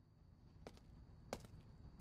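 Near silence: faint room tone with a few short, soft clicks.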